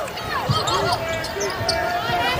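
A basketball being dribbled on a hardwood court, low thumps of the bounces, with short squeaks of players' shoes during live play.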